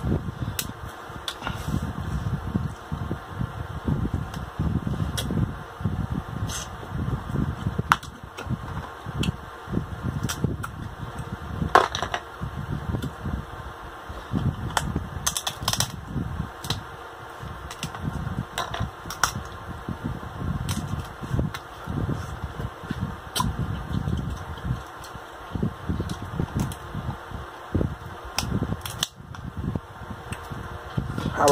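Boiled king crab leg shells cracking and snapping by hand, many sharp cracks scattered throughout, with chewing and lip-smacking between them.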